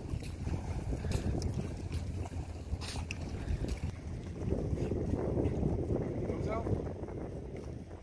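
Wind buffeting the microphone outdoors by the sea: a steady, noisy low rumble. A faint voice comes in briefly near the end.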